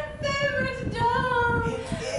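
A woman singing, holding long notes that slide slowly downward, with a short break near the end before the next phrase.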